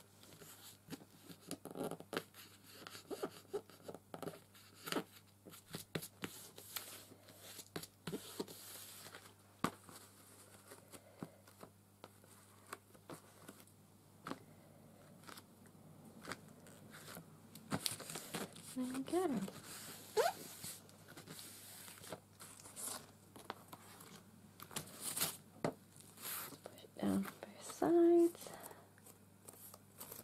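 Paper and card being handled: irregular rustling, crinkling and light taps as hands press and smooth glued paper down onto a board. Brief murmured vocal sounds break in a few times in the second half.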